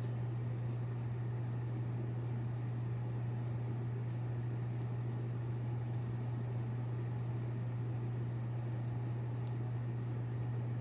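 Wall-mounted split air conditioner running: a steady low hum with an even airy hiss. A few faint rustles come from a head scarf being tied.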